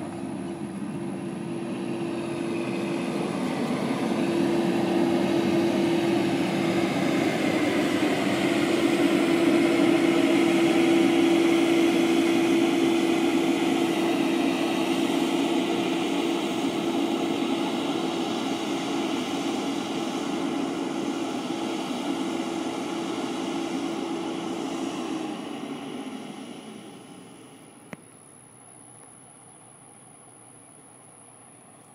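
Semi-truck diesel engine running with a steady droning hum as the tractor-trailer moves across the lot. It grows louder over the first ten seconds or so, then fades and drops away about 26 seconds in as the truck pulls off into the distance.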